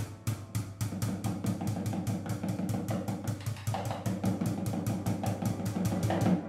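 Drumsticks striking a cloth-draped snare drum in a fast, even pulse of about five or six strokes a second, over an upright piano playing low chords.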